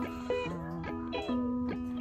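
Background music: plucked strings, guitar-like, playing short notes over a held tone.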